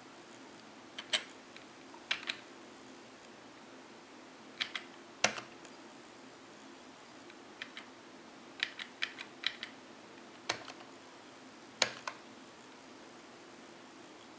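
Computer keyboard keys pressed one at a time and in short runs, about fifteen separate clicks with gaps between them, over a faint steady hum.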